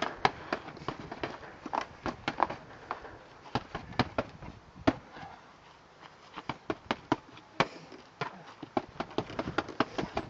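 Fists striking a rope-hung punching bag: sharp, irregular smacks, often in quick runs of two or three, with a sparser stretch a little past the middle.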